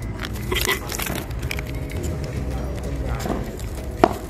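Faint talking in the background over a steady low rumble, with a few light crackles.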